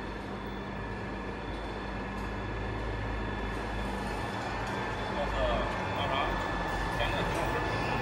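Steady machinery hum and low rumble from running factory equipment, with no sudden sounds.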